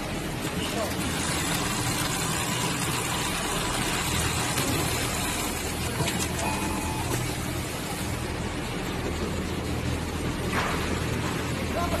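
Automatic template sewing machine with a JUKI lockstitch head running steadily, stitching a curved seam along a clamped template.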